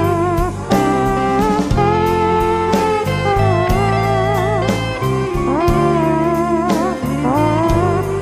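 Electric guitar solo with bending and sliding notes over a rock band's drums and bass, in an instrumental break between sung verses.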